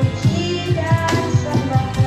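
A girl singing an Indonesian worship song over acoustic guitar, with a steady picked rhythm of about four notes a second underneath.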